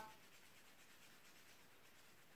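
Near silence, with only the faint rub of a marker drawing along the edge of filter paper.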